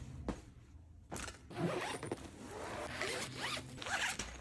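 Zipper on a fabric packing cube being pulled shut: a continuous zipping rasp that starts about a second in, after a few faint fabric handling sounds.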